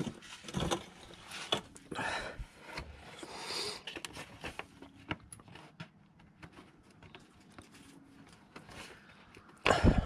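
Irregular scrapes, clicks and knocks of a hand working at the lower fan shroud under a vehicle, tugging at a section still held in by a clip. They are busiest in the first few seconds, then fainter.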